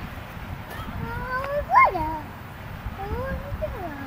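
A toddler calling out in wordless, sing-song cries: two drawn-out calls, each rising and then falling in pitch, the first peaking about two seconds in.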